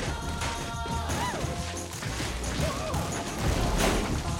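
Animated-film crash sound effects over steady music: a hang glider tearing through beach umbrellas, with a sharp impact shortly before the end.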